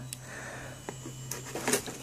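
Faint clicks and rustles of a pocket knife and a cardboard box being handled, a few sharper ticks in the second half, over a steady low hum.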